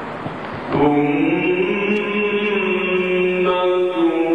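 A male Quran reciter, amplified through a microphone, begins a long drawn-out melodic phrase in the ornamented mujawwad style about a second in, after a brief stretch of crowd noise. He holds the note steadily and shifts pitch slightly near the end.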